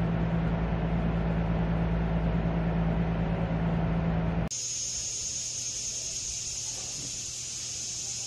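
A steady machine hum with a low, even drone, like a fan running, cuts off abruptly about halfway through. A quieter steady hiss with a high, even whine follows.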